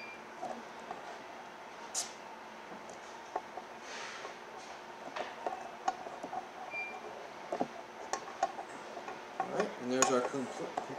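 Close handling of wire leads being wrapped with tape: scattered small clicks and rustles, with short rasping sounds about two seconds in and again around four seconds.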